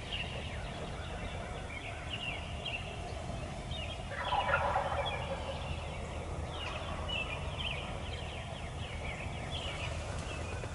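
A wild turkey gobbler gobbles once, a loud rattling gobble about four seconds in.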